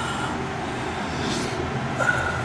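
Steady low rumble of background noise with a faint thin whine above it, without breaks or sharp sounds.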